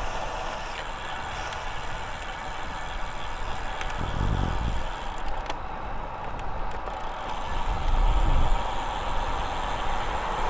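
Wind rushing over the microphone and tyre noise on asphalt from a road e-bike riding along, steady throughout, with heavier low buffeting about four seconds in and again around eight seconds.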